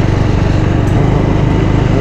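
Motorcycle engine running steadily while being ridden, with a rapid, even pulse.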